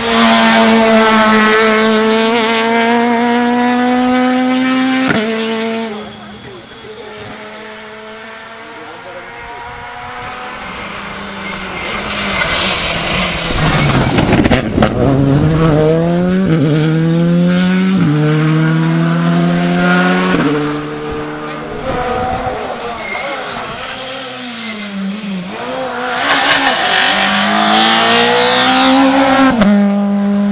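Rally cars at full speed on a tarmac special stage, engines revving high and dropping in steps at each gear change. About halfway through, one car passes close with a rush of engine and tyre noise, its pitch falling and then climbing again as it accelerates away.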